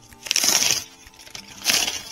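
Cardboard being ripped along a box's perforated tear strip: two tearing rips, about half a second in and again near the end.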